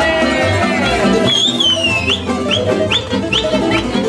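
Live folk band music: tamburica strumming over a steady bass beat, with a violin playing high sliding notes and quick upward flicks in the second half.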